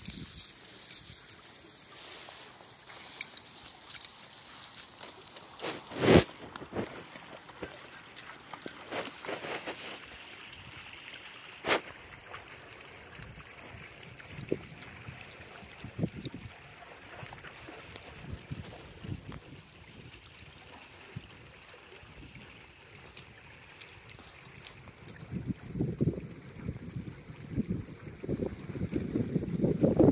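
A shallow creek trickling and gurgling over stones, with a few sharp clicks, two of them louder, about six and twelve seconds in. A low rumble builds near the end.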